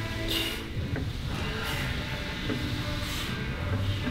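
Plate-loaded push sled sliding over artificial turf with a steady low rumble, and a short hiss about every second and a half as each driving step goes in.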